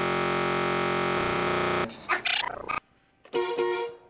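Electronically distorted, synthesizer-like sound: a steady held tone for nearly two seconds, then choppy stuttering fragments, a brief gap, and a short pitched burst near the end.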